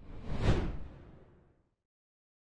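A whoosh sound effect for an animated intro graphic: it swells to a peak about half a second in, then fades away over the next second.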